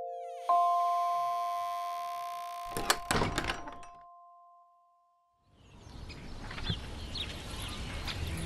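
A bell-like chime note rings out and slowly fades. A few seconds in, a door's lever handle is turned, and the latch and door click and knock several times. After a short silence, soft background noise fades in.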